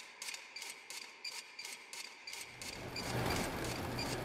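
Rhythmic mechanical ticking, about four sharp clicks a second, with a low rumble swelling in under it from about halfway and growing louder.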